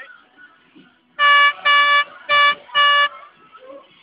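A vehicle horn sounding four short toots in quick succession, each a steady single note.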